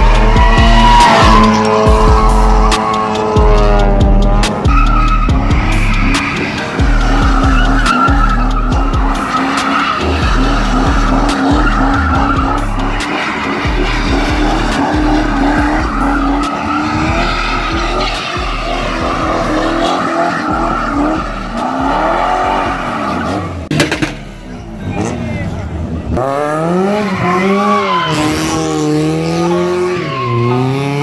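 Cars doing donuts: engines revved hard again and again, pitch sweeping up and down, with tyres squealing and skidding on the pavement. A steady bass line of background music runs underneath.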